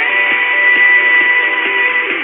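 Music from a mediumwave AM radio broadcast received on a portable receiver, thin and cut off above the midrange, over a bed of reception hiss and noise. A single high note is held steady for about two seconds.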